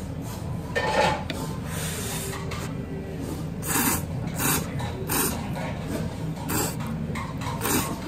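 Thick ramen noodles being slurped: a short slurp about a second in, then a run of about five short, hissing slurps roughly a second apart in the second half, over a steady low hum.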